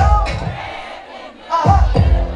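Live concert sound through the PA: a performer shouts into the microphone over the crowd, the bass-heavy beat drops out for about a second, leaving the crowd noise, then slams back in near the end.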